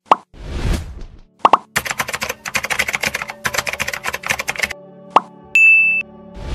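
Animated logo outro sound effects: a sharp pop and a whoosh, another pop, then about three seconds of rapid clicking over a low hum, a final pop, and a short high beep near the end.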